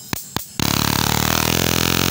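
A high-voltage boost (arc generator) module powered by a 4 V lithium cell: a few sharp snaps as the battery wires touch, then from about half a second in a loud, steady buzzing electric arc across its output wires.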